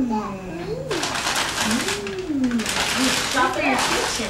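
Tissue and wrapping paper rustling and crinkling as a present is unwrapped, loudest from about a second in until just before the end, over wordless rising-and-falling 'ooh'-like voice sounds.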